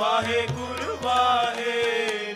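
Shabad kirtan: a male voice singing a wavering melodic line over harmonium, with tabla strokes underneath.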